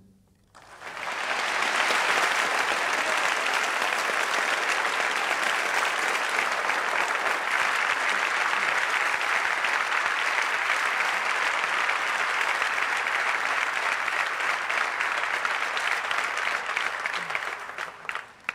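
Audience applauding. The applause rises quickly about half a second in, holds steady, and dies away near the end.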